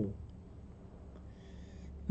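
A man's short exclamation "oh", falling in pitch, right at the start. After that there is only a low steady hum and room tone, with a faint hiss near the end.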